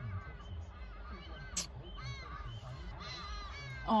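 Hadeda ibis calling: a run of short repeated calls, about three a second.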